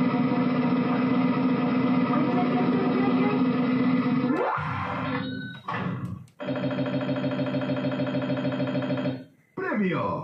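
Gigames El Chiringuito slot machine playing its electronic bonus-roulette music while the wheel spins, ending about four and a half seconds in with a rising glide as the wheel stops on a prize. After a short break, a rapidly pulsing electronic prize jingle plays for about three seconds, followed by a few sliding electronic tones near the end.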